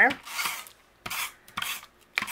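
Cardstock panels being handled and slid by hand on a craft mat: a few short papery scrapes and rubs with brief pauses between them.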